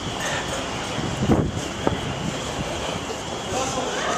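Footsteps on a walkway with a few soft knocks, over a steady hubbub of passers-by and faint distant voices.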